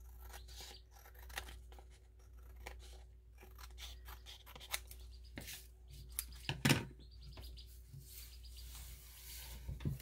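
Scissors snipping through old book-page paper in a run of short, faint cuts, trimming off the excess edge. A louder knock comes about two-thirds of the way through.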